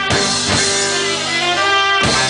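Live band playing an instrumental passage: trumpet and trombone hold long notes over electric guitar, upright bass and drums, with a drum hit at the start.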